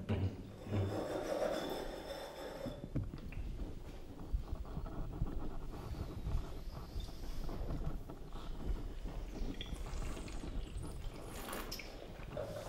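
Wine tasters breathing in and sniffing at their glasses, with a short hissy draw of air near the end as the wine is tasted, over a faint irregular low rumble.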